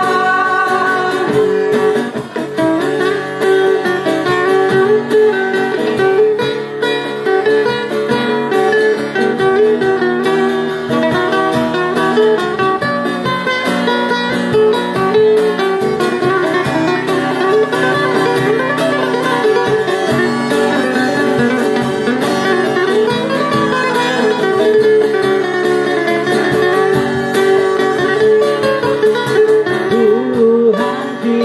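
Live acoustic instrumental passage: acoustic guitars strumming chords while a violin plays a wavering melody line over them, with no singing.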